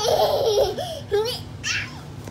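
A toddler laughing and squealing in several short, high-pitched calls.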